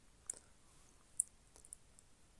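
Four short, sharp clicks over faint background noise, the loudest about a second in.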